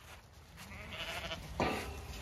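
A flock of Zwartbles sheep approaching at a run over grass and fallen leaves, with faint bleating. The sound grows louder as they come nearer, with a short rustle or thud about three-quarters of the way through.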